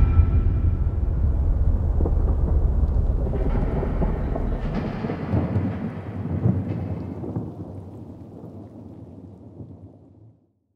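Thunder: a low rolling rumble with scattered crackles that slowly fades away over about ten seconds.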